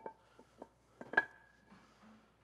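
Concrete wall blocks knocking against each other as they are set in place by hand: a few sharp knocks, the loudest just past a second in, followed by a short ringing tone.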